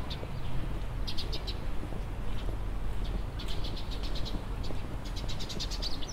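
Small songbirds chirping in quick runs of short, high chirps, three runs of several notes each, over a low steady outdoor rumble.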